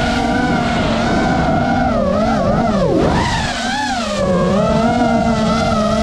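Small FPV quadcopter's motors and propellers whining, several pitches rising and falling together as the throttle changes, with a quick drop and climb in pitch about three seconds in.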